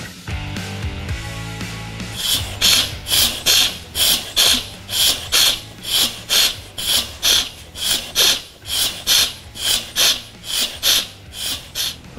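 Socket ratchet wrench worked back and forth on the front pulley bolt of a 13B rotary engine, clicking in short regular strokes about two to three a second as the bolt is tightened during assembly.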